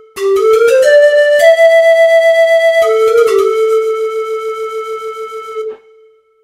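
Kurtzman K650 digital piano playing a built-in voice demo: a single-line melody that climbs over a few quick notes, holds a high note, then drops to a long lower note that fades and stops shortly before the end.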